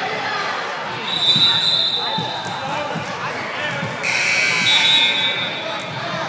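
Referee's whistle blown twice: a shrill blast about a second in, then a longer, louder one about four seconds in, over gym chatter and voices.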